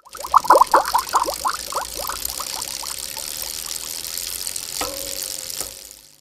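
Sound effect for an animated channel logo: a rapid run of short, watery bloops, each falling in pitch, that come thick at first and thin out over a few seconds, over a steady high hiss. A short held tone sounds near the end before it fades out.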